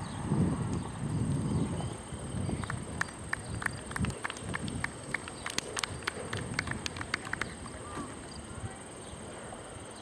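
Horse cantering over sand arena footing, its hoofbeats uneven and muffled at first. A few seconds in comes a run of sharp, irregular clicks, about four or five a second, lasting around five seconds before fading.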